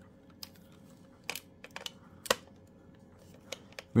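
About half a dozen light, scattered clicks and taps of a wire lead and screwdriver being worked against the metal screw terminals of a telephone terminal board. The sharpest click comes a little over two seconds in.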